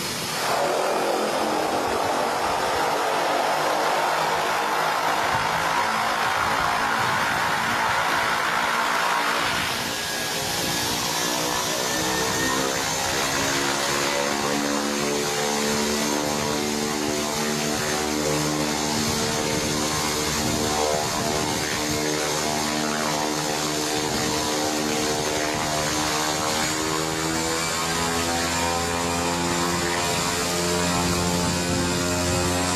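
Single-engine propeller aircraft running on the ground; the engine sound swells about half a second in, and after about ten seconds it settles into a steady run with a thin high whine above it as the plane taxis.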